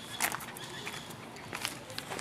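Outdoor background noise with a few short, sharp knocks, one about a quarter second in and another past the middle.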